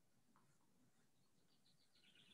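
Near silence: the faint room tone of a conferencing audio feed, with a few faint short chirps in the second half.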